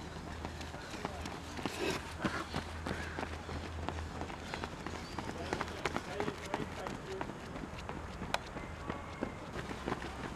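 Runners' shoes striking a synthetic running track as they pass close by: a quick, irregular patter of footsteps over a steady low hum.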